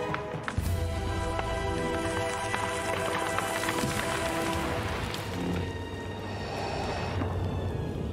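Film soundtrack: a dark music score over the steady low hum of ignited lightsabers, with the hum dropping away near the end.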